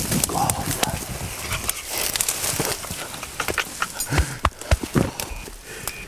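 Dry leaves, twigs and brush rustling and crackling as people move through thick undergrowth, with scattered irregular snaps and footsteps.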